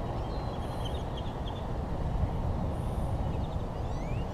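Outdoor ambience: a steady low rumble with faint, short bird chirps about half a second in and again near the end.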